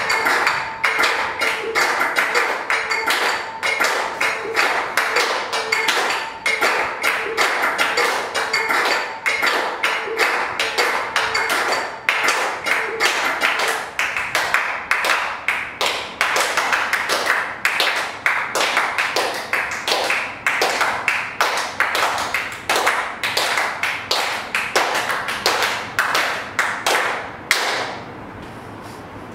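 A fast, dense percussive rhythm of taps and claps that runs steadily and cuts off abruptly at the very end.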